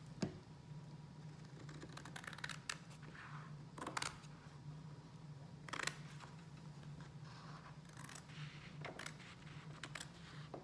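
Scissors cutting watercolor paper: a run of short snips and paper rustles, the loudest about four and six seconds in, over a low steady hum.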